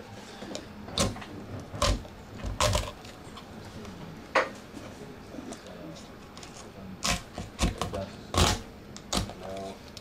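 A large kitchen knife chopping and cracking through a fish's head and striking a wooden cutting board: a series of sharp knocks at uneven intervals, about eight in all.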